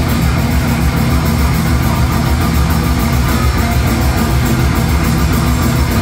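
Thrash metal band playing live through club amplification: distorted electric guitars and bass over a drum kit with a fast, steady beat, loud and dense.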